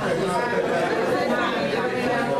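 Crowd chatter: many people talking over one another at once, a steady hubbub of overlapping voices.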